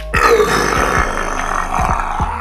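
A man's long, loud burp after chugging a carbonated soda. It starts just after the opening and is loudest at its start, then carries on rough and drawn-out for nearly two seconds.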